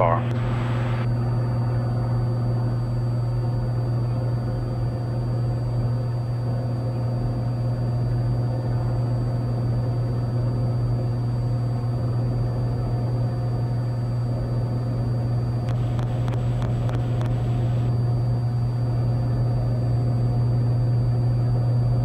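Steady drone of a Cessna 182's six-cylinder piston engine and propeller heard inside the cabin in flight: a low, even hum with a hiss above it.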